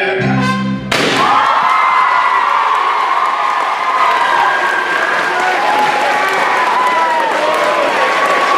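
A live band's final chord cuts off just under a second in, followed by an audience cheering and applauding, voices whooping over the clapping.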